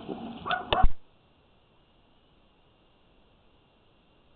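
A short voice-like sound with a couple of sharp clicks in the first second, then near silence for the remaining three seconds.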